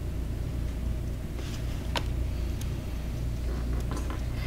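Steady low hum, with a couple of faint light clicks about two seconds in.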